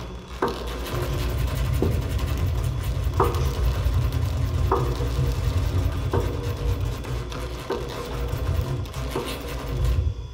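Experimental chamber music for pianos and percussion: a steady low rumble under a struck, ringing tone that repeats about every second and a half, seven times.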